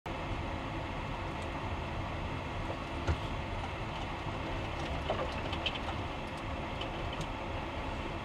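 Steady road and engine noise of a vehicle cruising on a highway, heard from inside the cab, with a few light clicks and rattles and one louder knock about three seconds in.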